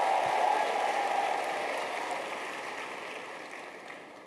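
Congregation applauding, the clapping fading away steadily.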